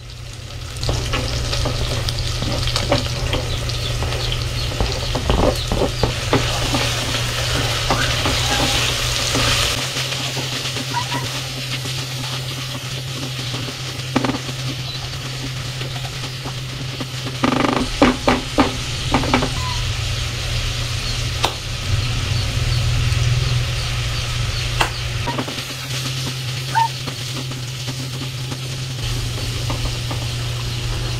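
Chicken pieces, and later shredded carrots, sizzling in hot oil in an aluminium pot, stirred with a silicone spatula that scrapes and knocks against the pot in a few short clusters, with a steady low hum underneath.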